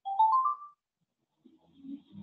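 A short electronic chime of about four quickly rising notes, like a phone notification or ringtone, lasting under a second.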